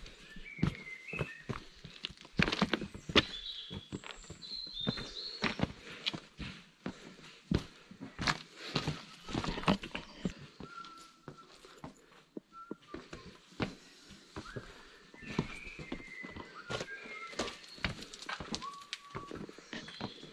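Footsteps crunching and clattering over loose river stones and rocks on a dry stream bed, irregular and uneven, with birds chirping now and then.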